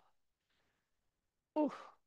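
Near silence, then about one and a half seconds in a woman lets out one short, falling "oof": an effortful exhale while holding a low lunge with arms raised.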